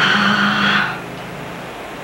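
A sudden short screeching sting on the film soundtrack, loud for under a second and then fading to a low steady hum.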